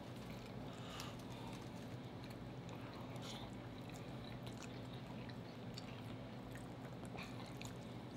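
Quiet, close-up chewing and small wet mouth clicks from people eating, over a steady low hum.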